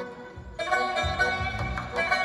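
Live traditional Central Asian ensemble music: a long-necked string instrument plays the lead over a low beat and keyboard, getting louder about half a second in.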